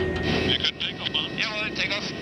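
Rescue helicopter running on the ground as heard from inside the cabin: a steady engine and rotor noise, at the point of takeoff. A crew member's voice comes through it near the end.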